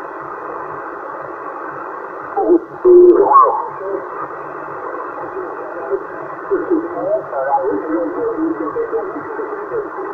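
Yaesu transceiver receiving on the 27 MHz CB band as its frequency is tuned: steady, narrow, muffled band noise with faint, garbled voices of distant stations drifting in and out. A louder snatch of voice comes through about three seconds in. Distant stations coming through like this is the sign of strong long-distance propagation on 27 MHz.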